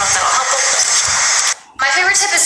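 A woman's voice over background music, breaking off in a brief gap near the end before a woman starts speaking again.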